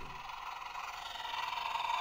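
Electronic sound effect from a Dickie Toys off-road rescue vehicle's small speaker, set off by a button press, growing steadily louder.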